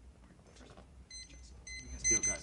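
Two high electronic beeps, the second longer than the first, over faint low room hum.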